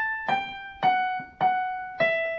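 Casio CDP-130 digital piano playing a slow single-note melody that steps down: a held A, then G, then F sharp struck twice. Each note rings and fades until the next.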